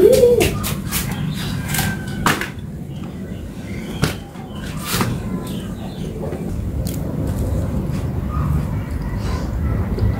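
Light knocks and taps from handling, as grated young coconut is dropped by hand into a plastic blender jar: several sharp ones in the first half, then fewer. Birds call over a steady low background.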